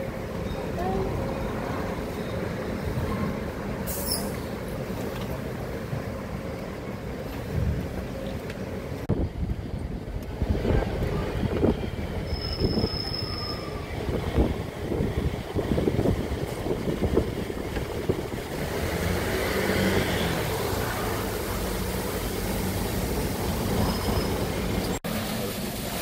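Outdoor city ambience: a steady noisy rumble, with a run of sharp knocks in the middle and abrupt changes about nine seconds in and just before the end.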